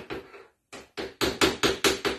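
Spatula knocking rapidly against a metal sheet cake pan while spreading batter: a few strokes, a brief pause just after half a second in, then a quick run of about seven knocks a second.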